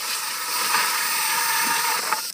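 Cordless drill spinning a hole saw through the top of a plastic 55-gallon barrel: a steady, high whirring hiss of the motor and saw teeth shaving the plastic.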